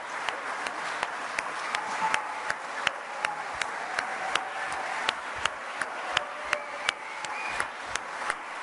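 Audience applauding, with single sharp hand claps standing out above the steady clapping about three times a second, and faint voices underneath.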